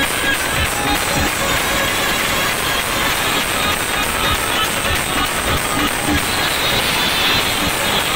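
Loud live Indian brass band music, with electronic drum pads played with sticks through the sound system keeping a steady beat.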